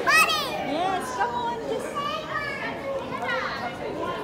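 A young child's high-pitched voice calling out, loudest right at the start, followed by more child chatter and voices.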